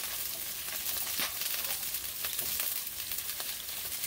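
Cauliflower florets sizzling in hot oil in a stainless steel pan: a steady hiss with scattered crackles.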